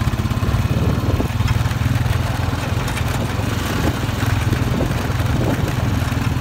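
Honda ATV engine running steadily as the quad rides along, a low, even drone.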